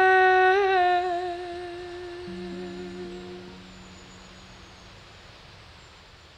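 A woman's voice holds a long, wordless closing note with a slight vibrato, fading out about three and a half seconds in, over the last ringing notes of an acoustic guitar that die away soon after.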